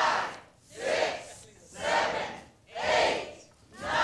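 Studio audience shouting numbers in unison, counting up together with one loud group shout about every second.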